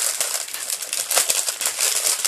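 Christmas wrapping paper crinkling and rustling in quick, irregular crackles as a dog pulls at a wrapped present.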